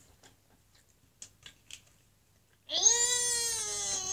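A girl's long, high-pitched 'mmm' hum while tasting candy, starting nearly three seconds in and slowly falling in pitch. Before it, only a few faint clicks.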